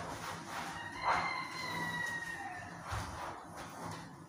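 Cloth rubbing on a window's glass and frame, with one drawn-out squeak that slowly falls in pitch from about a second in. A soft thump follows about three seconds in.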